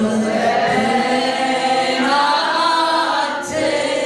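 A woman singing solo and unaccompanied into a microphone, amplified through a PA loudspeaker, holding long notes with a brief break near the end.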